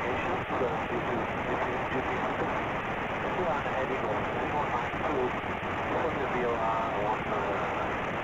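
Aircraft VHF radio audio from the cockpit: a steady hiss of static on the frequency with faint, unintelligible voices of controllers and other aircraft running through it, sounding thin and narrow like a headset feed.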